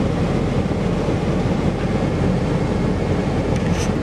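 Steady low rumble of a vehicle running, heard from inside its cabin.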